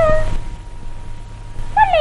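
Cantonese opera music from a 1936 gramophone record: a high, sliding melodic line holds a note that ends about a third of a second in. A quieter gap follows with steady hum and hiss, and a new sliding phrase begins near the end.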